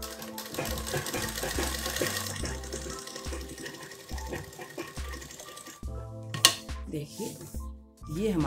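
Sewing machine running steadily as it stitches a seam, stopping about six seconds in, followed by a single sharp click. Background music with a steady beat plays throughout.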